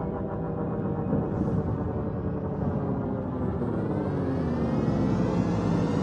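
Cinematic logo-intro sound effect: a deep rumble that builds into a rising, swelling whoosh, climbing in pitch through the second half.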